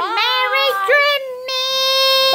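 A high voice singing without clear words: a few short sliding notes, then one long held note starting about one and a half seconds in.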